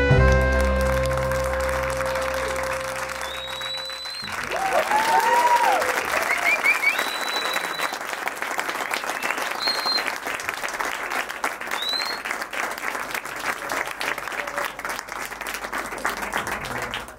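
A jazz band of trumpet, clarinet, piano, double bass and drums ending the tune on a final chord that rings out for about four seconds and is cut off. Then applause, with cheering and a few whistles, through to the end.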